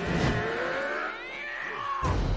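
Soundtrack of an animated superhero episode: several high, wailing tones that glide up and down in pitch, with the deep background sound falling away about a second in.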